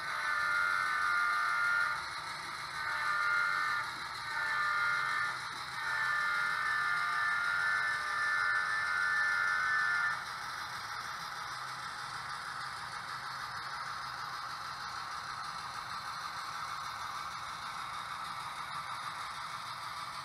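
Model diesel locomotive's sound decoder sounding its horn in four blasts as it approaches the grade crossing: about two seconds, a short one, a slightly longer one, then a last blast held about four seconds. After that comes a steady quiet running noise of the HO-scale train on the track.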